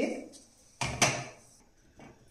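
Spatula scraping and knocking against a stainless steel pan while stirring dry-roasting gram flour: two short strokes about a second in.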